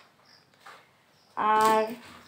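A woman's voice: one short held vocal sound with a steady pitch, about a second and a half in, after a near-quiet stretch with only faint small handling sounds.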